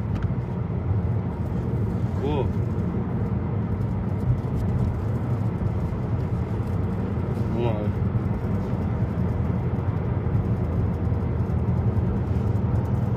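Steady low road and engine noise inside a moving car's cabin, with a brief voice sound about two seconds in and another near eight seconds.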